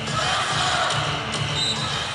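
Basketball arena ambience during live play: a steady crowd murmur with the sounds of ball and players on the hardwood court.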